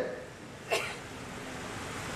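A pause in a man's amplified speech: faint room tone of the hall, broken by one short breathy noise at the microphone about three-quarters of a second in.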